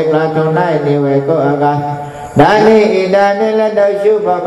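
A Buddhist monk chanting in a melodic recitation, holding long steady notes. The voice drops briefly about two seconds in and comes back louder.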